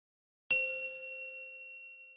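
A single bell ding sound effect, struck about half a second in, ringing with a clear tone of several overtones and slowly fading.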